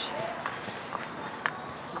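Footsteps while walking uphill, with a few light knocks over a steady outdoor background; a faint voice is heard briefly near the start.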